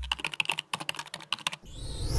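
Intro sound effect of rapid typing clicks, about ten a second, as the logo's text is typed out on screen. The clicks stop about a second and a half in, and a rising whoosh begins near the end.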